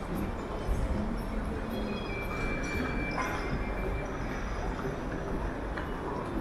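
Busy airport terminal concourse ambience: a steady rumble of crowd chatter, footsteps and rolling luggage echoing in a large hall. A thin high tone sounds for about a second, a little after two seconds in.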